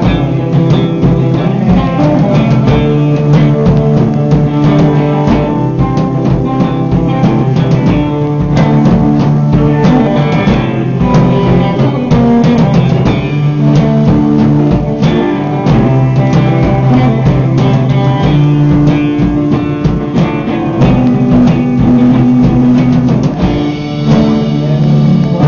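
Live rock band playing: a drum kit keeps a beat of hits throughout under strummed electric guitar and held low notes, loud and continuous, with a brief drop in level near the end.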